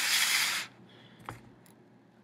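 Handling noise from the lab setup being adjusted: a short rushing, rustling noise in the first half second, then a single light click a little over a second in, and quiet room tone after.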